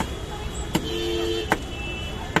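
Crushed ice being packed by hand around a stick: two sharp pats about three-quarters of a second apart, over a steady rumble of street traffic. A short horn toot sounds in between.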